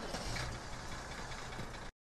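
Steady, indistinct background noise with a low rumble and no clear source, cutting off abruptly just before the end.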